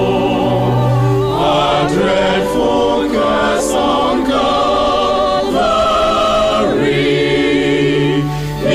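Choir singing a slow Methodist hymn in held chords, the voices moving together from note to note every second or so with a light vibrato.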